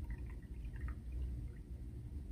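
Red liquid poured from a small plastic bottle, trickling and dripping faintly into a sand-and-gravel pit, thinning out after about a second.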